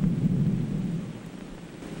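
A deep rumble that starts suddenly, then fades away over about two seconds.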